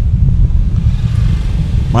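A loud, steady low rumble fills a pause in speech.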